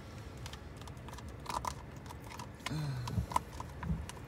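Small terrier licking and lapping whipped cream from a cup, a run of irregular wet clicks and smacks.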